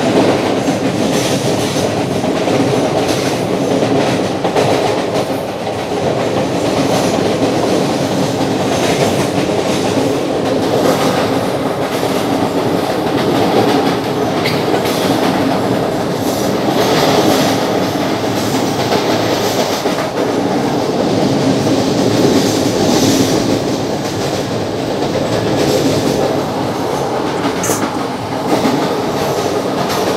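CPTM series 3000 electric multiple unit heard from inside the car while running at speed: a steady rumble of wheels on rail with occasional faint clicks.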